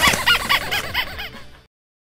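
Paper party horns blown in a quick run of about seven short toots, each bending up and down in pitch, cutting off suddenly about a second and a half in.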